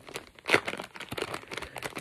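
Plastic packaging of a soft-plastic fishing bait crinkling and crackling as it is handled, with a sharper crackle about half a second in.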